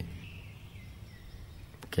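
Faint steady background hiss with a low hum in a gap between spoken phrases; a man's voice starts again at the very end.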